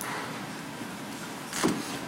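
Steady, even hiss of lecture-hall background noise, with a short breath-like burst near the end.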